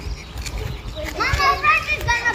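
A young child's high voice calling out for about a second in the second half, its pitch bending up and down, over a low outdoor rumble.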